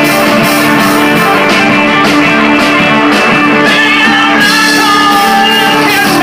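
Live rock band playing loud: electric guitars, electric bass, acoustic guitar and drum kit, with a voice singing over them.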